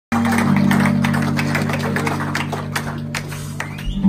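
Live rock band on stage: a held low chord rings under a scatter of sharp hits, the whole slowly fading.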